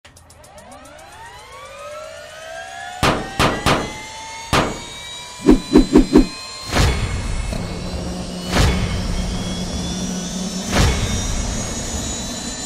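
Cinematic logo-intro sound effects: a rising whoosh that swells over the first three seconds, then a string of heavy impact hits, including a quick run of four low thuds, with a steady low hum under the later hits.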